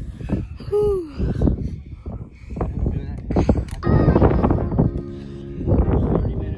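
A woman's voice, with no clear words, over background music. In the last second or so the music's sustained tones come to the fore.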